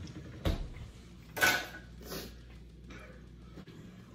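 Household handling noises: a knock about half a second in, then a short scraping rustle about a second and a half in and a fainter one soon after.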